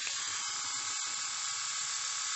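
Philips YS521 two-head rotary electric shaver running steadily on its newly replaced, freshly charged batteries: an even, high whirring buzz.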